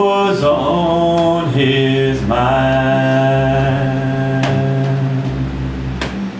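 A man singing long, held notes live, sliding from one pitch to the next, over a steady low accompaniment.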